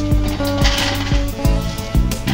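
Background music: held, guitar-like plucked notes over a steady beat, with a brief crinkly rustle about half a second in.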